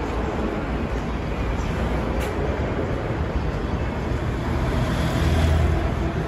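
Steady city street hubbub of traffic rumble. It grows louder near the end as a vehicle passes.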